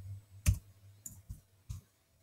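A few sharp computer-keyboard keystrokes, typing a new value into a box. The first, about half a second in, is the loudest, and three lighter ones follow in the second half.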